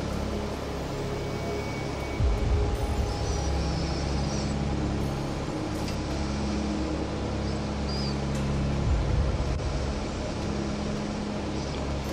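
Steady low rumble and hum of idling vehicles at the roadside, with faint background music.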